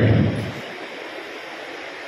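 A man's voice tails off in the first half second, then a pause filled with a steady hiss of background noise.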